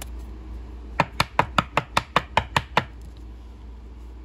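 A rigid plastic toploader tapped on the tabletop about ten times in quick, even succession, about five taps a second, to settle a sleeved card down into the holder.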